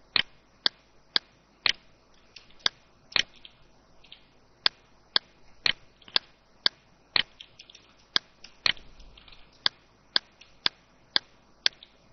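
Computer mouse clicking: sharp, even clicks about two a second, with one short pause near four seconds in.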